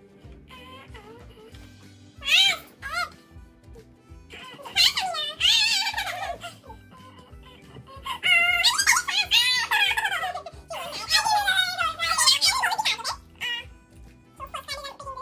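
Girls' garbled, mangled speech and giggling as they try to talk with plastic cheek-retractor mouthpieces in, over background music. The voice comes in bursts: briefly about two seconds in, again around five to six seconds, then almost without a break from eight to thirteen seconds.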